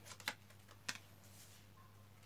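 A few light clicks and snaps of tarot cards being handled over a wooden table, two close together about a quarter second in and another near one second, over a low steady hum.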